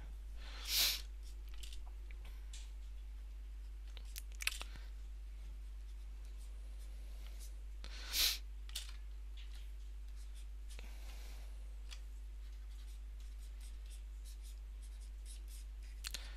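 Quiet room tone with a steady low electrical hum and a faint steady whine, broken by a few short soft sounds about a second, four and a half and eight seconds in.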